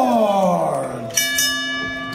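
Ring announcer's voice over the arena PA drawing out a fighter's name in one long call that falls in pitch. About a second in, a steady ringing tone takes over.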